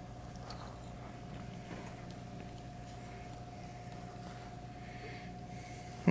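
Quiet room tone: a steady low electrical hum with a faint steady whine above it, and no distinct event.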